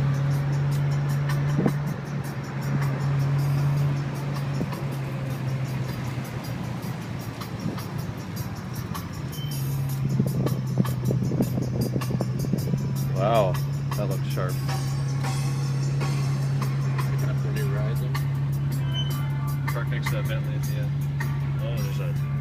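A car's engine running in a steady low hum, heard from inside the car, with music playing. About six seconds in the steady hum gives way to an uneven rumble for a few seconds, then settles again.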